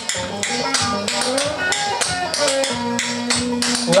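Clogging shoe taps striking a hard floor in quick rhythmic clicks, several a second, as the dancer steps basics and brushes, over music playing.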